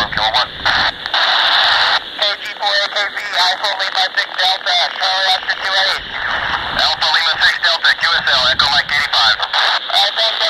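Amateur radio operators' voices received through the AO-91 FM satellite on a Baofeng handheld's speaker, thin and narrow-sounding, with a stretch of hiss about a second in and frequent brief dropouts as the signal flutters.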